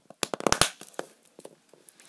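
A quick run of sharp clicks and taps as a plastic slime container is handled on a wooden table, with one more click about a second in.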